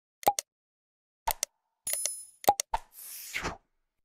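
Subscribe-button animation sound effects: a series of short pops and clicks, a bell ding about two seconds in, then a short whoosh near the end.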